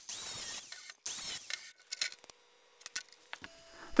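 Angle grinder with a cut-off wheel cutting iron square-cut nails to length, in two short bursts of grinding within the first two seconds.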